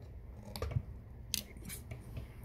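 A screwdriver working the presser-foot screw of an industrial sewing machine: a few faint metallic clicks and scrapes, the sharpest about a second and a half in.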